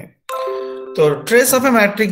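A desktop notification chime on a Windows PC: a short run of steady tones stepping down in pitch, as the Google Meet "You're presenting to everyone" pop-up appears. Speech follows about a second in.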